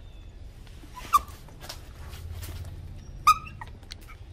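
A monkey gives two short, high-pitched squeals about two seconds apart, the second longer and louder. There are faint rustles between them.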